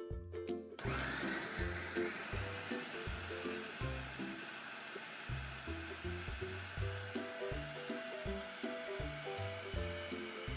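Electric food processor switched on about a second in, its motor spinning up with a slight rise in pitch and then running steadily as the blade chops onion chunks.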